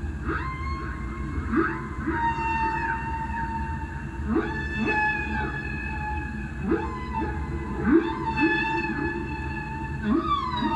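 Ambient electric guitar played in a way that sounds like whale song: long held notes that bend and slide in pitch, with short rising swoops in a lower register, over a steady low drone.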